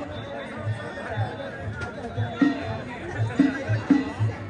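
Danjiri festival drumming, a steady taiko beat at about two strokes a second with a few louder strokes among them, under the chatter of a dense street crowd.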